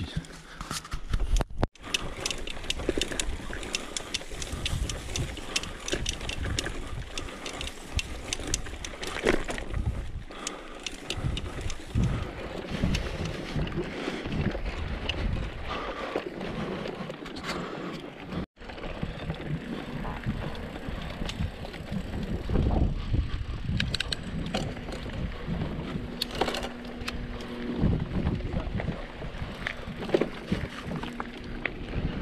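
Mountain bike riding over a rough dirt trail: tyre crunch and continual rattling of the bike and handlebar-mounted camera, with wind on the microphone. The sound drops out briefly twice, and a steady low hum joins near the end.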